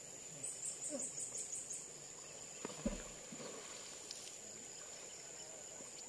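Outdoor ambience with a steady high insect drone, a quick run of about seven short high chirps in the first two seconds, and faint distant voices. A single brief knock about three seconds in.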